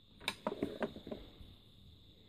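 A few light clicks and knocks as wooden tobacco pipes are handled and one is lifted off a shelf, bunched in the first second or so.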